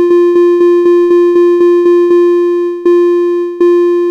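Computer playback of a rhythm on a single repeated synthesized note: three triplets (nine quick, even notes) followed by three slower quarter notes, the last one fading away.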